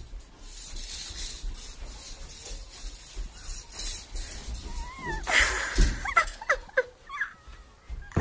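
Wordless high-pitched vocal squeals and whines from young clown performers: a loud noisy outburst about five seconds in, then a run of short sliding cries.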